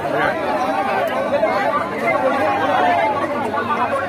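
Crowd chatter: many men talking and calling out at once, overlapping voices with no single speaker standing out.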